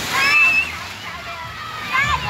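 Wave-pool water sloshing and splashing as a continuous rush, with many children's voices shouting and calling over it and one high, held cry near the start.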